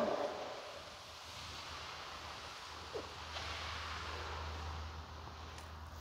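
Faint indoor room tone: a steady hiss with a low hum that grows stronger a little past halfway, and one brief soft sound about three seconds in.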